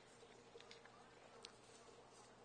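Near silence: faint room tone with a low steady hum and a few very soft ticks.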